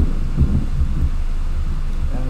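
Wind buffeting a phone's microphone outdoors: a low, uneven rumble over a steady low hum.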